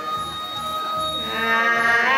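Two women singing hát sli, the unaccompanied Nùng folk duet: one long, steady high note is held, then past the middle a voice with a wavering pitch swells in.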